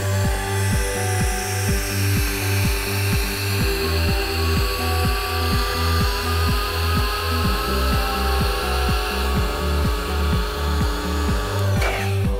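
Electric air pump switched on and running as it tops up an inflatable sofa bed, a steady motor hum with a faint whine that rises slowly in pitch; it cuts off near the end. Background music with a steady low beat plays throughout.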